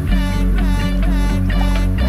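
Background music with a steady bass line and guitar.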